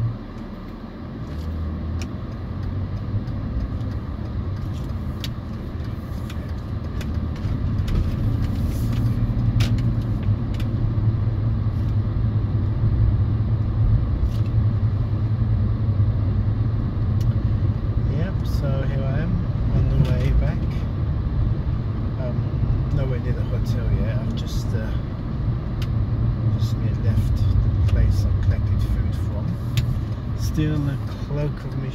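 Car engine and road noise heard from inside the cabin while driving: a steady low rumble that starts about a second in and grows louder some seconds later as the car gets up to speed. A short click comes right at the start.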